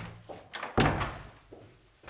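A sharp knock, typical of a wooden door shutting, about three-quarters of a second in, with a smaller click just before it and a few faint taps after.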